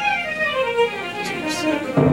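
Live band playing an instrumental introduction: a run of notes stepping downward, with the full band coming in on a held chord near the end.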